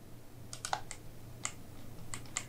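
A few sharp clicks of computer input: a quick run of three about half a second in and a single one near the middle, over a faint steady low hum.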